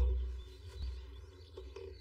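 Quiet pause with a steady low hum and a few faint bird chirps about half a second to a second in.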